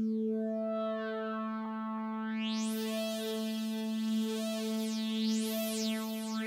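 Electronic music: a sustained synthesizer drone held on one note, with a bright filter sweep that rises about two and a half seconds in and then sweeps up and down repeatedly.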